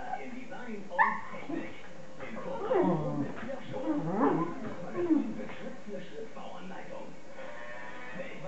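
Two beagles play-fighting: a sharp yelp about a second in, then a run of growly barks and yips between about three and five seconds.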